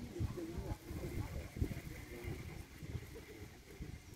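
Indistinct voices talking at a distance, over an irregular low rumble and a faint steady high hum.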